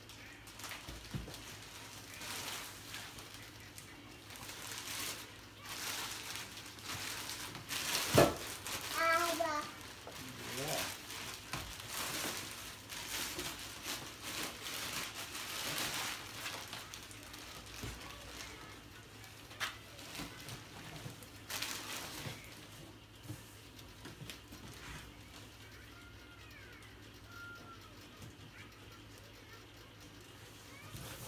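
Plastic bags crinkling and a cardboard box rustling as aluminum cylinder heads are unwrapped and lifted out, with one loud knock about eight seconds in.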